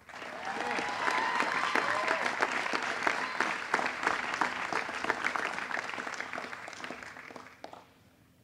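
Audience applauding, with a few voices cheering in the first few seconds; the clapping dies away about seven and a half seconds in.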